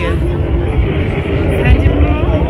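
Street ambience at night: a heavy low rumble, like passing traffic, under voices of people in the background.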